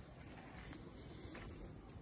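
Steady high-pitched insect chorus, with a few faint soft crunches of footsteps on dry ground.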